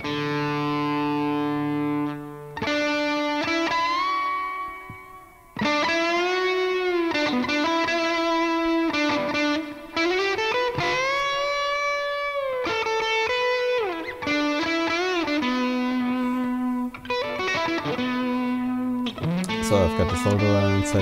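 Electric guitar fitted with hand-wound Stratocaster-style single coil pickups, playing a sustained lead melody as a sound demo of the pickups. Several notes bend up and down in pitch and waver with vibrato, with brief breaks about two and five seconds in.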